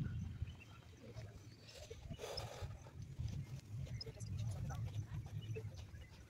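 Uneven low rumble of wind buffeting a phone's microphone, with a brief hiss about two seconds in.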